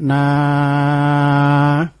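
A man's voice drawing out the syllable 'nā' in one long chanted note at a steady pitch, closing a Northern Thai sermon verse; it stops just before the end.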